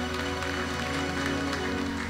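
Church band music: sustained chords held over a steady bass line.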